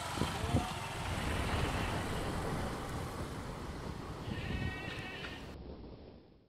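Motorcycle engine running as the bike pulls away along a road, with a low rumble throughout. A brief, higher-pitched wavering call sounds about four and a half seconds in.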